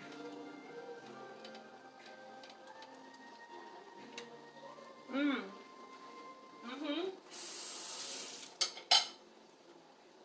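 Kitchen dish and utensil sounds: a hiss lasting a little over a second near the end, then a few sharp clatters, the last one the loudest, over faint background music.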